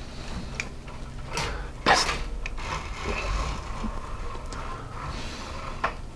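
Handheld camera being handled and moved: a sharp knock about two seconds in, a few lighter clicks, and low rustling in between.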